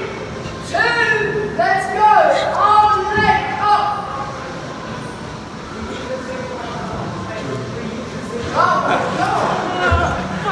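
A person's voice in a large, echoing room, heard in the first few seconds and again near the end, with a quieter stretch between.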